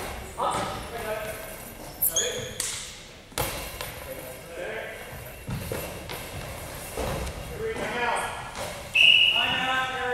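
Goalball, a ball with bells inside, jingling as it is thrown and bounces across a wooden gym floor, with several heavy thuds of players diving and landing on the court, ringing in a large hall. Voices are heard near the end.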